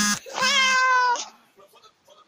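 Cat meowing twice: a brief call, then a longer one of nearly a second that rises and falls in pitch.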